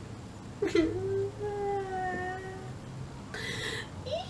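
A woman's voice making one long, slightly falling whimpering wail in mock sadness, followed by a short breathy sound near the end.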